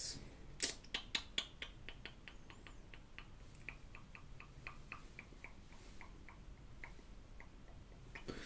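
A run of faint, sharp clicks, about three or four a second. They are louder in the first second or two, then fade and stop shortly before the end.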